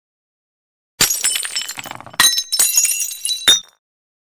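Glass-shattering sound effect for a logo animation: a sudden crash about a second in, with high tinkling shards, a second crash a moment later, and a last sharp strike near the end.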